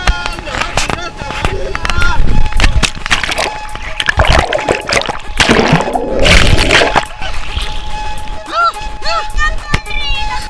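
Background music, with a swimmer's water splashing and bubbling loudest from about four to seven seconds in as he goes under the surface.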